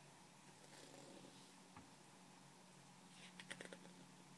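Near silence: room tone with a faint steady hum, a single light click, and a short run of faint paper rustles and clicks about three seconds in as the picture book is handled.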